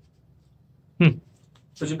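A quiet shop room at first, then one short spoken syllable from a man about a second in, and his speech starting again near the end.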